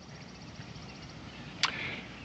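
A single axe stroke into wood, one sharp knock about one and a half seconds in, over a low steady background hiss.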